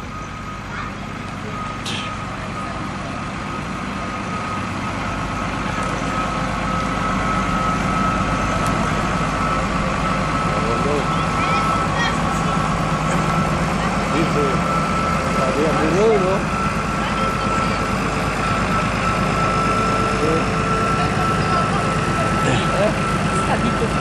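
Renault farm tractor's diesel engine running as it pulls a parade float past, growing louder over the first several seconds and then holding steady, with a steady high-pitched whine over the engine hum.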